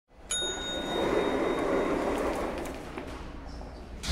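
Lift arrival chime: a single bell-like ding a moment in that rings on and fades, while the lift doors slide open.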